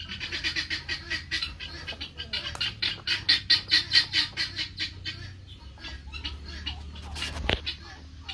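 Chickens squawking in a fast, even run of calls, about four or five a second, swelling to their loudest midway and then dying away. A single sharp knock sounds near the end.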